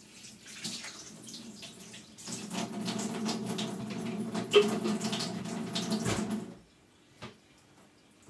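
Water running from a kitchen tap into the sink, faint at first, then turned up about two seconds in and shut off suddenly with about a second and a half to go. A single small click follows.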